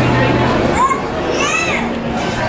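Background chatter of people with a child's high-pitched voice calling out twice near the middle, over a low steady hum that stops about half a second in.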